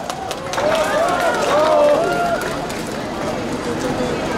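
Crowd of onlookers calling out and exclaiming, many voices rising and falling over one another for about two seconds, with a few sharp pops at the start.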